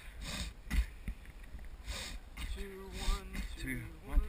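Running footfalls and heavy breathing close to a body-worn camera as two people jog in step, the camera jolting with each stride. A voice sounds a drawn-out note near the end.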